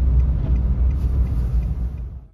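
Car cabin noise while driving: a steady low rumble of engine and tyres, heard from inside the car.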